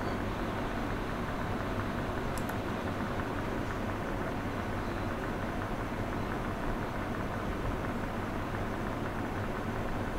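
Steady noise of an electric fan running, with one faint click about two and a half seconds in.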